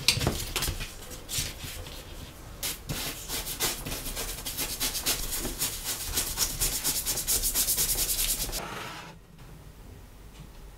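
A toothbrush scrubbing along the edge of a stitched leather strap in quick, even back-and-forth strokes that stop suddenly about nine seconds in. Before the scrubbing, the leather is shifted about on a cutting mat with irregular rustles and taps.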